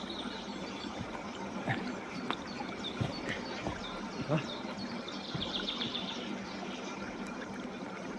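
Steady trickle of water from a small pool running out over stones, with a few soft knocks and footfalls in the first half, and a brief high chirping a little past the middle.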